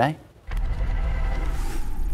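News graphic transition effect: after a brief pause, a steady low rumble with a faint hiss starts about half a second in and holds.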